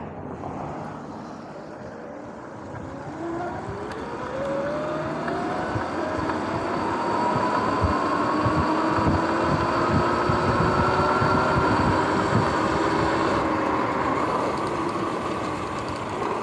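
Sur-Ron X electric dirt bike pulling away from a stop. Its motor whine rises steadily in pitch for several seconds as it accelerates, then holds fairly level at speed, over rushing wind noise on the microphone that grows louder with speed.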